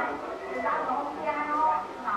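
A kitten meowing over people's voices.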